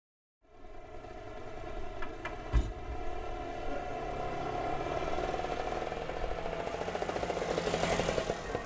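Small motor scooter engine running and growing louder as it approaches, with a fast pulsing beat near the end. A single sharp knock stands out about two and a half seconds in.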